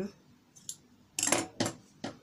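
Two short, sharp metallic clacks from fabric-cutting scissors, about half a second apart, with a fainter click a little before them.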